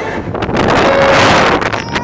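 Wind buffeting the microphone on a moving open amusement-ride car: a loud rushing gust that builds about half a second in and eases off near the end.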